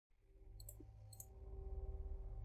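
A low, steady drone fades in from silence and grows louder, with two faint high clicks about half a second apart near the middle.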